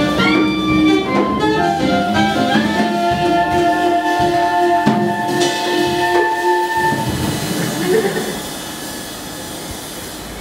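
Small jazz band of saxophones, clarinet, double bass and drum kit playing the end of a tune. The horns hold long notes that stop about seven seconds in, and a cymbal keeps ringing and fades away.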